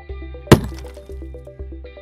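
A single sharp crack about half a second in, loud and ringing briefly, over background music with sustained tones.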